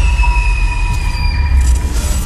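Cinematic trailer sound effect: a loud, deep rumbling hit with sustained high metallic screeching tones over it. Some of the high tones fade partway through.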